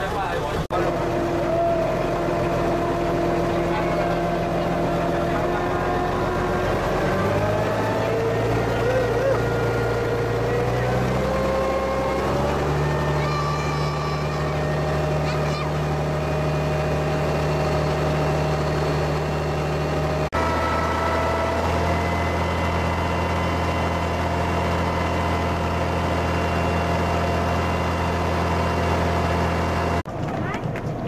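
A passenger boat's engine running with a steady low drone. Its pitch steps up twice in the first half as it speeds up.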